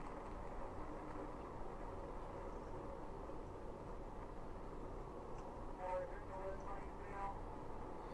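Steady road and engine noise inside a police patrol car driving fast on a highway, a continuous rumble. A faint voice is heard briefly about six to seven seconds in.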